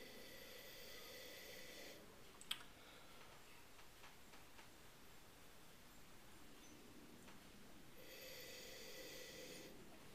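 Faint nasal sniffing of red wine in a glass: one slow inhalation for about the first two seconds, and another near the end. A single faint click about two and a half seconds in.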